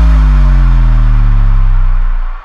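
Closing effect of an electronic dance remix: a loud, deep bass tone sliding slowly down in pitch, under a fading wash of noise.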